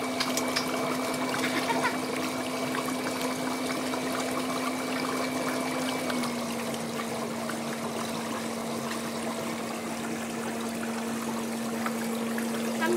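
Electric foot spa running: a steady motor hum with water churning and bubbling in the basin. The hum drops slightly in pitch about halfway through.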